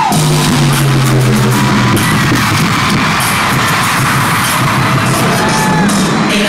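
Loud live pop music played over an arena sound system, heard from among the audience. Sustained low notes sound through the first two seconds.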